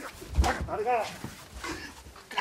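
Two men scuffling and falling onto tatami mats: a heavy thump about half a second in, with short strained grunts and cries from the struggle.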